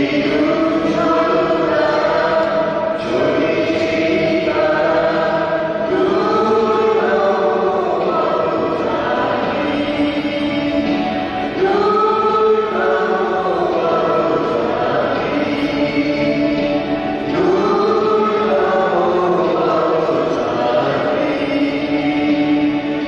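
A choir singing a hymn in long held notes, phrase after phrase, with no break.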